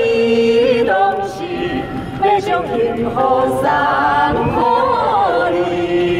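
Several people singing a song together into handheld microphones, holding long notes.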